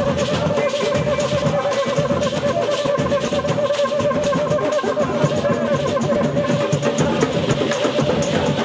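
Street batucada band playing: drums and hand percussion keep a dense, steady rhythm while banjos and guitars are strummed.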